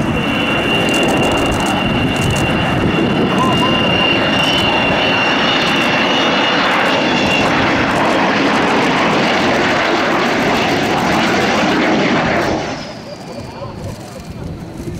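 Avro Vulcan XH558's four Rolls-Royce Olympus turbojets in a loud, steady roar during a low flypast, with a high whistling tone over the roar for the first half. The roar drops away sharply near the end as the bomber passes.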